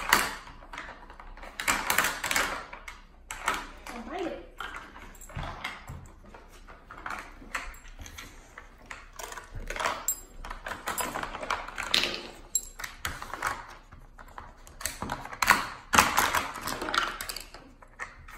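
Dog working a plastic treat puzzle on a hardwood floor: irregular clacks, taps and rattles as the plastic lids are flipped open and the pieces are nosed loose and knocked onto the floor.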